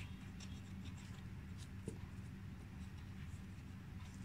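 Pencil on paper: faint short scratches and taps as a child draws dots into boxes on a worksheet, over a steady low background hum.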